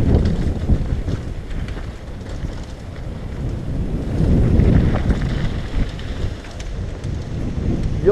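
Wind buffeting the microphone of a helmet-mounted action camera as a mountain bike rolls fast down a dirt and gravel trail. The low rumble swells about halfway through, with scattered clicks and rattles.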